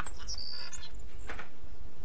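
Outdoor ambience with a short, high bird chirp about half a second in.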